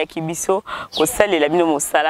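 Only speech: a person talking in French, continuously.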